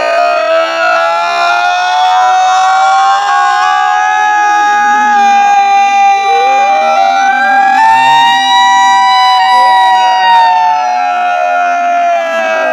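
A siren wailing: one long, loud tone that rises slowly and holds. About six seconds in, a second wail sweeps up to join it.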